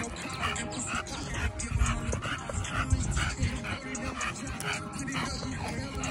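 A bully-breed dog panting fast and rhythmically, about two to three breaths a second, over hip-hop music with a heavy beat.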